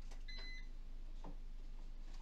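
A short electronic beep from a kitchen appliance's control, lasting about half a second, followed by a faint knock over a low steady hum.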